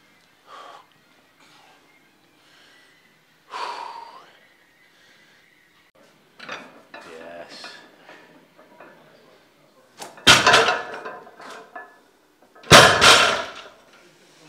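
Loaded barbell with bumper plates set down hard on the deadlift platform twice, about two and a half seconds apart, each a loud clanking thud that rings briefly.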